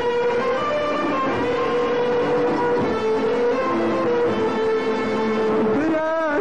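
A violin section playing a slow melody of long held notes that step from pitch to pitch. A singer's wavering voice comes in right at the end.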